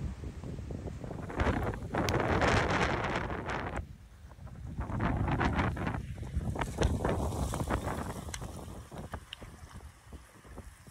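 Wind buffeting the microphone over sea water washing across a rocky shore, rising and falling in two long surges, with a few light taps in the second half.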